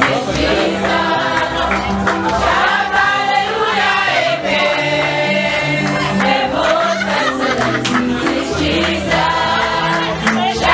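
A group of women singing a song together in chorus, with held low notes beneath the voices.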